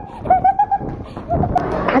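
A girl giggling in a quick run of short, high-pitched repeated notes, broken by a brief pause about a second in.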